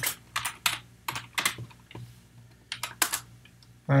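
Typing on a computer keyboard: a quick run of irregular keystroke clicks, pausing for about a second in the middle before a few more keys are struck.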